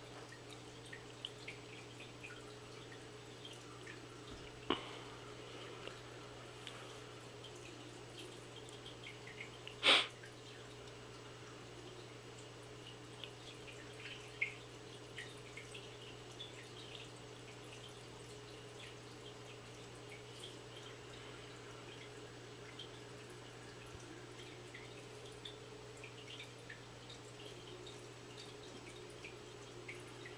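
Fish tank water dripping and trickling over a steady low hum from the tank's pump or filter, with many small drips and ticks. There is a sharper click about five seconds in and a louder splash or tap about ten seconds in.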